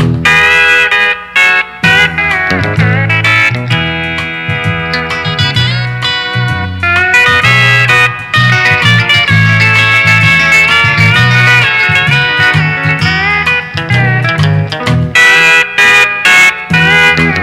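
Instrumental break in a country song: a lead guitar solo with bending, sliding notes over a steady bass line and rhythm guitar.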